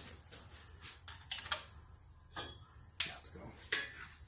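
A few light, sharp metallic clicks and taps from tools and parts being handled on an aluminium VW flat-four engine case; the sharpest click comes about three seconds in.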